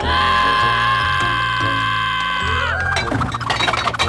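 Cartoon background music with a sustained high-pitched tone that bends down and cuts off about two and a half seconds in, followed by a rapid clatter of clinks like something breaking.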